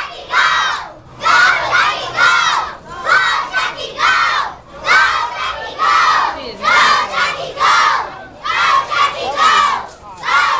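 A crowd of children shouting together in rhythmic bursts, about two shouts a second, like a group chant.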